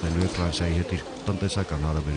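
A man's voice speaking steadily: low-pitched news narration.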